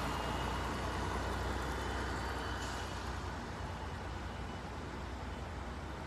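Steady outdoor background noise of distant road traffic: an even low rumble and hiss with no distinct events.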